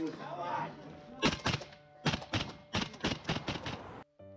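A brief voice, then from about a second in a run of about a dozen irregular knocks and thumps, the handling noise of gear bumping against a body-worn camera as soldiers move about a vehicle.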